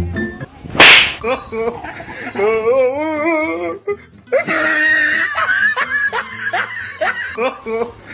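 Dubbed comedy soundtrack: a single sharp crack like a whip about a second in, then wavering vibrato tones and laughter over background music.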